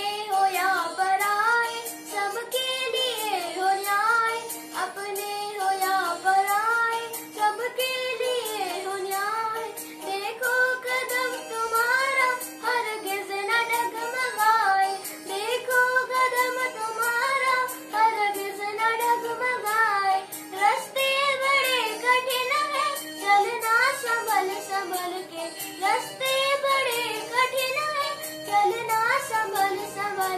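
A boy singing a song solo, in a melodic line with bending and held notes.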